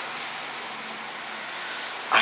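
Steady, even hiss with a faint low hum: the background noise of a small restroom.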